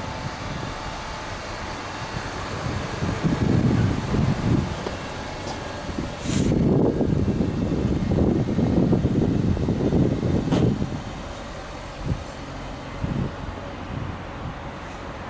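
Low outdoor traffic rumble that swells twice, briefly about three seconds in and for longer from about six seconds in, with a sharp click as the second swell starts and another as it fades.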